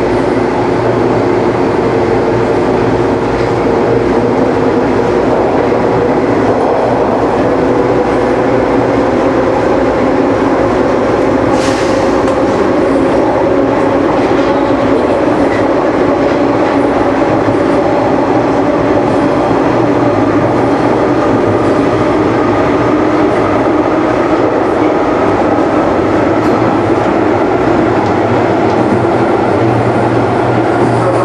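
Hawker Siddeley H5 subway car running through a tunnel, heard from inside the car: a loud, steady rumble of wheels on rail with a motor whine that slowly rises in pitch. A brief high click about twelve seconds in.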